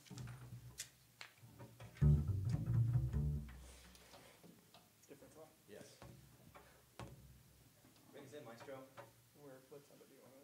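A few low plucked notes on an upright double bass about two seconds in, lasting a second or so, then only faint low voices.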